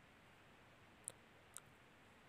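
Near silence with a faint steady hiss and two short, sharp clicks about half a second apart, just after the middle.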